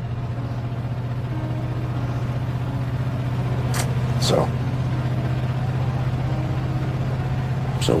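Steady low rumble of a car's engine and road noise heard inside the moving car's cabin.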